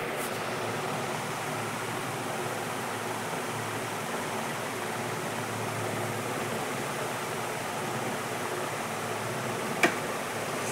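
Steady rushing of aquarium water, as from a filter return splashing into the tank. A single sharp click comes near the end.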